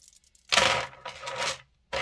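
Plastic-bead bib necklace on a metal chain clattering against a plastic tray as it is set down: a sudden jingling rattle about half a second in, a smaller rattle around a second in, then it cuts off.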